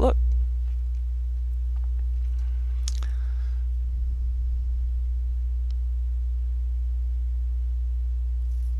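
Steady low electrical hum with a few fainter higher overtones, picked up on the recording; a single faint click about three seconds in.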